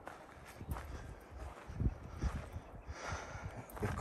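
Footsteps on a dirt bank, a few soft irregular steps with light rustling.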